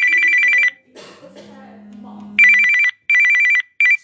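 A telephone ringing with a loud, trilling electronic two-tone ring in short bursts. One burst sounds at the start, then after a pause three more come in quick succession near the end.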